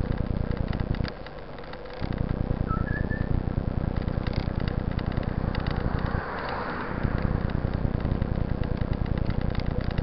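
Wind buffeting and road-vibration rumble on a bicycle-mounted camera as the bike rolls along a rough street, dropping away twice for about a second.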